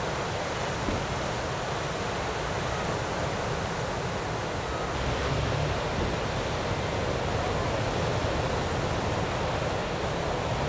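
Ocean surf breaking and washing in: a steady, even rush of noise that gets a little louder about halfway through.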